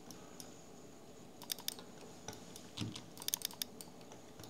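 Scattered clicks from a computer keyboard and mouse, about nine irregular clicks, several bunched together late on, over a faint steady background.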